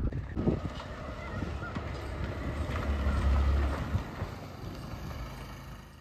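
A motor scooter riding past, its engine rumble swelling to its loudest about three seconds in and fading away near the end, with wind buffeting the microphone.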